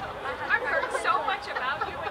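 Indistinct chatter: several voices talking and calling out at once around the sideline of a soccer game.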